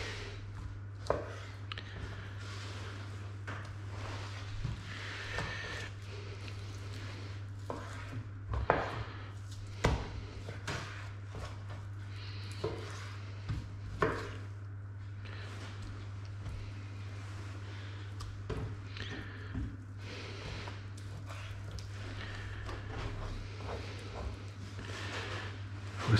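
Knife cutting and trimming pork on a cutting board: scattered soft knocks and scrapes, with a few louder knocks in the middle. A steady low hum runs underneath.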